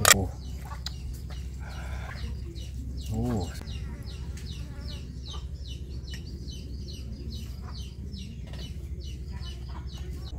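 Chickens clucking in the background, with a string of short high calls repeating throughout and a longer call about three seconds in. A sharp knock sounds right at the start.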